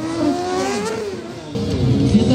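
Stunt motorcycle engine revving: the pitch climbs through the first second, then falls away. About a second and a half in, a sudden louder burst of throttle comes as the bike is lifted into a wheelie.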